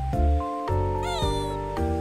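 A five-week-old kitten gives one short meow about a second in, its pitch rising then falling, over background music of steady held notes.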